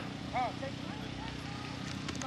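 A lull with a steady low hum and faint outdoor background, broken about half a second in by one short call from a person's voice.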